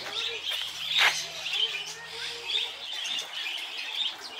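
A chorus of many small birds chirping and twittering, short high notes overlapping continuously, with one sharp, louder sound about a second in.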